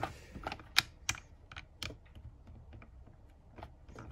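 Plastic Lego plates and bricks clicking and knocking as they are handled and pressed together on a Lego baseplate: a quick run of sharp clicks in the first two seconds, the loudest a little under a second in, then a few scattered ones.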